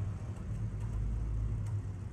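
Steady low background hum with a deeper rumble that swells around the middle and eases off near the end.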